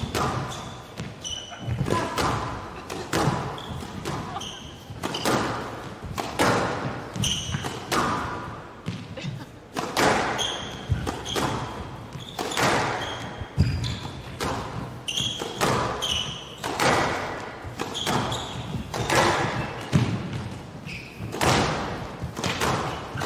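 A long squash rally: the ball is struck by rackets and hits the walls about once a second, with short high squeaks of shoes on the court floor between the shots.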